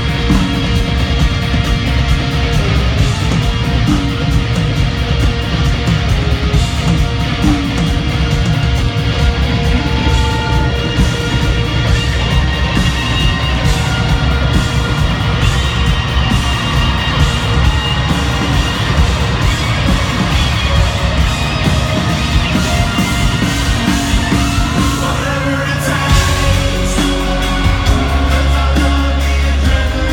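Live rock band playing at arena volume through a PA, recorded from the audience, with drums and heavy bass under electric guitars. A deeper bass swell comes in near the end.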